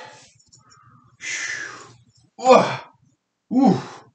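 A man's long breathy sigh, then two short grunts with pitch in them, about a second apart, as he starts swinging a belt in exercise.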